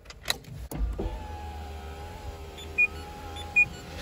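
A few clicks as the key goes into the ignition, then the electric window motor of a Renault Taliant running with a steady whine for about three seconds. Two short high beeps sound near the end.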